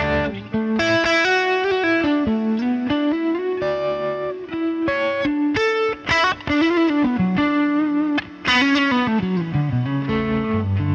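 Electric guitar played through a Line 6 HX Stomp dual-amp preset of Fender Twin and Vox-style amp models: single-note lead phrases with string bends and vibrato, lightly driven, with two short breaks between phrases.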